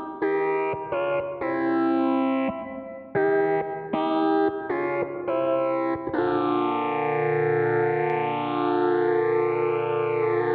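Electric guitar played through a Korg Miku Stomp and a Magpie Pedals Fruits oscillator pedal, the Fruits adding voices two octaves down and two octaves plus two whole steps down. A run of short notes gives way about six seconds in to one long held note with a phaser sweeping slowly up and down.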